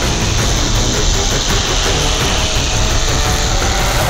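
Dramatic TV background score: a deep, steady low drone under a sustained hissing wash that cuts off at the end.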